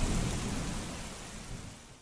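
A steady hiss like rain, fading out evenly to silence by the end.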